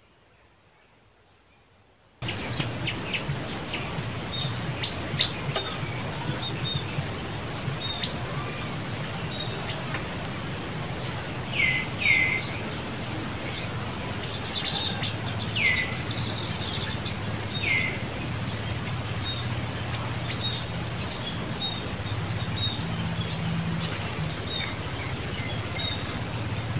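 After near silence, outdoor ambience cuts in suddenly about two seconds in: a steady background hiss and low hum with birds chirping, several short downward-sweeping chirps among many faint high ticks.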